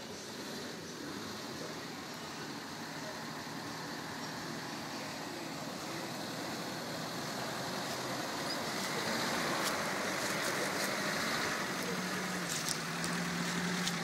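Daihatsu Feroza 4x4's engine working as it crawls over a dirt slope toward and past the camera, growing steadily louder. A steady low engine note comes up plainly in the last couple of seconds, with a few sharp clicks near the end.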